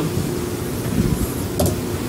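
Lecture-hall room noise picked up by the presenter's microphone: a steady low rumble and hiss with a faint hum, and a faint click about one and a half seconds in.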